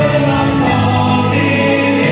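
A mixed group of male and female singers singing into microphones in close harmony, holding long sustained chords that change a couple of times.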